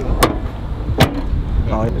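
Low background rumble with two sharp clicks, about a quarter-second in and about a second in, and a man's voice starting near the end.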